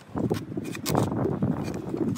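Knife blade cutting into the side of an empty tin-plated steel food can, a run of irregular metallic scraping and clicking as the blade works through the thin metal.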